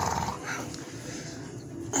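American Staffordshire terrier growling low while tugging on a plastic toy held in its mouth.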